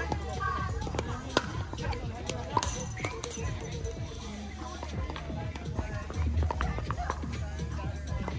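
Pickleball paddles striking the plastic ball during a rally: several sharp pops a second or so apart, over background music and people's voices.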